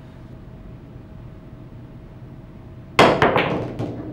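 Pool jump shot about three seconds in: a sharp crack of the cue on the cue ball, then a quick run of clacks as the ball lands and strikes the object ball.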